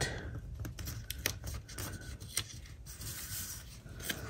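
Faint handling of a paper sticker on a planner page: small ticks and rustles as it is peeled, shifted and pressed down, with a light rubbing near the end.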